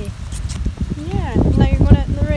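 Hoofbeats of a Fell pony walking as it is led, with wind rumbling on the microphone.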